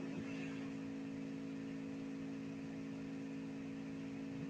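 Steady low electrical hum from a meeting-room microphone and sound system, with a faint hiss underneath.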